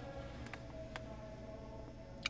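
Faint steady low hum in a car cabin, with two light ticks about half a second and one second in.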